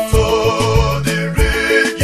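Nigerian gospel praise music playing: an upbeat groove of drum strikes over moving bass notes, with sustained melodic instruments above.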